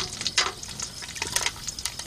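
Low sizzling with a few sharp clicks and crackles from a pot of melted wax over an open wood fire, a steel trap on a chain having just been lowered into the hot wax.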